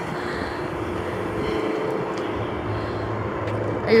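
A steady, distant engine drone with a low hum underneath, with no other event standing out.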